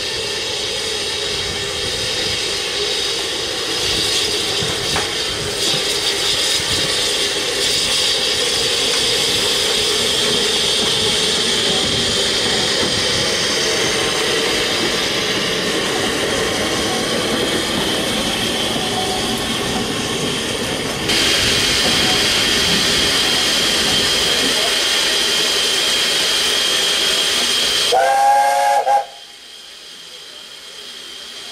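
Steam hissing steadily from SECR P Class 0-6-0 tank locomotive No. 323 'Bluebell', stepping up louder about two-thirds of the way through, then one short whistle blast near the end.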